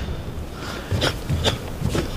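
A karateka performing a kata: four short, sharp movement sounds about half a second apart as he strikes and steps.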